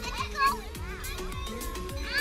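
Children's voices calling out over background music.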